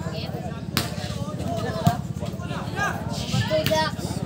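Sepak takraw (boloc-boloc) ball kicked back and forth in a rally: three sharp hits, the first two about a second apart, the third about two seconds later. Spectators' voices and shouts go on throughout.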